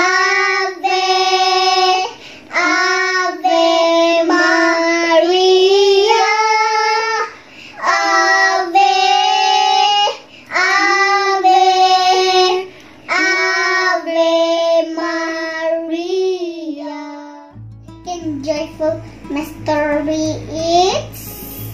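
Two children singing a slow devotional song together during a rosary, in held phrases broken by short breaths. About two and a half seconds before the end the singing stops and a steady low hum comes in.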